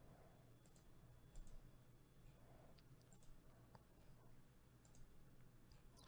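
A few faint, sharp computer mouse clicks, spaced irregularly over near silence.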